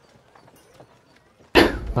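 A short pause with only a faint background and a few faint clicks, then a man's voice starts speaking about one and a half seconds in.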